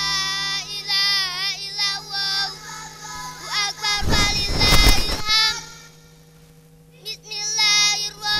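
A girl chanting Quran recitation in a melodic, ornamented style into a microphone over a PA, with long wavering held notes and a steady electrical hum beneath. About four seconds in, a loud noisy burst lasts roughly a second over her voice; she pauses briefly near six seconds, then resumes.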